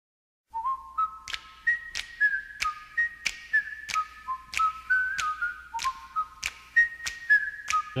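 Whistled theme tune: a bright melody that steps between notes, over a steady click beat of about three a second.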